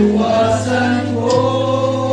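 A group of men singing together, holding long sustained notes.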